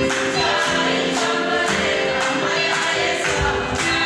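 Gospel music: a choir singing over a steady beat of about two strokes a second.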